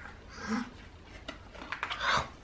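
A soft breathy gasp about half a second in, then a few faint light clicks and taps from small hands handling a cardboard board book.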